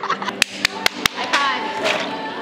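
Four sharp taps in quick, even succession, about five a second, among voices and background music.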